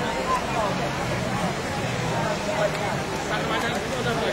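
Outdoor market hubbub: indistinct voices of stallholders and shoppers, over a steady low hum.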